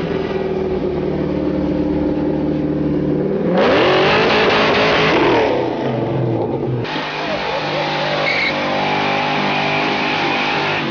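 Car engines revving hard. First a steady engine note, then about three and a half seconds in an abrupt jump to a loud rising rev. From about seven seconds another car revs hard as it spins its tyres in a smoky burnout.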